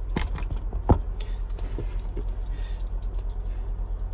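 A dog's metal collar tags jingling and clinking a few times, the loudest clink about a second in, over a steady low hum inside the truck cab.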